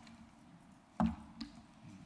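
A single short thump about halfway through, with a faint click shortly after, over quiet room tone in a pause in the talking.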